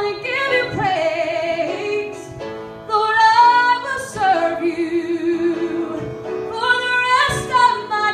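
A woman singing a slow worship song solo over piano accompaniment, holding long notes with vibrato between phrases.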